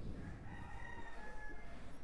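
A faint, drawn-out bird call lasting about a second.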